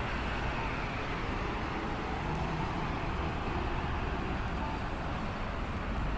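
Steady road traffic noise: a continuous rumble of passing cars with no distinct single event.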